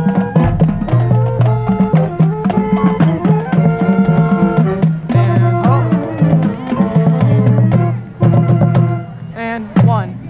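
Marching band playing its field show: drums and percussion over held low brass notes. The music thins out a couple of seconds before the end, then closes on a loud hit.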